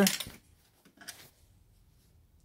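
Near silence with a couple of faint short clicks about a second in: a screw being drawn out of a thin metal side panel with a screwdriver and coming free.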